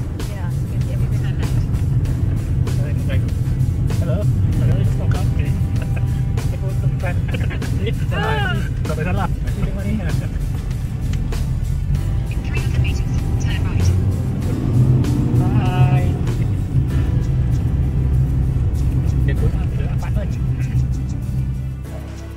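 Wind and road noise buffeting the microphone in a moving open-top car, a steady low rumble with crackling gusts, with raised voices twice and music underneath.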